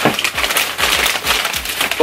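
Tissue paper rustling and crinkling as it is lifted and moved aside inside a cardboard shipping box, a dense run of small crackles.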